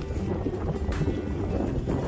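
Wind buffeting the microphone over the low rumble of wheelchair wheels rolling on asphalt, with music faintly underneath.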